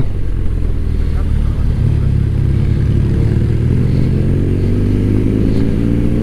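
Motorcycle engine running under way, heard from on board; its pitch climbs steadily through the second half as the bike accelerates.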